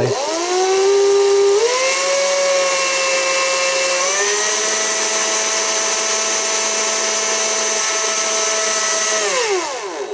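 Power drill with a 1 mm bit running while it bores a small hole in a plastic toy part. Its motor whine spins up at once, steps up in pitch twice in the first four seconds, holds steady, then winds down near the end.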